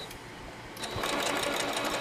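Electric sewing machine starting up about a second in and then stitching at a rapid, even rate, the needle ticking fast as bias tape is fed under the presser foot.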